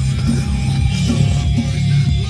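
Music: a hip hop beat with heavy, pulsing bass.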